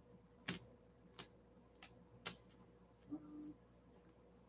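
Near silence broken by four faint, sharp clicks, spaced roughly a second apart, with a brief faint hum about three seconds in.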